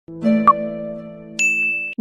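Electronic intro jingle: a held chord with a short click about half a second in, then a high bell-like ding joining about a second and a half in. It cuts off suddenly.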